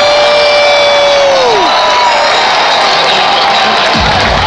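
Large stadium crowd cheering, with one nearby fan's long held yell that drops off about a second and a half in.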